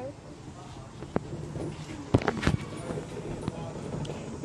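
Handling noise of a camera being picked up and moved: a few sharp knocks and rubs, the loudest cluster about two seconds in, over a low steady background.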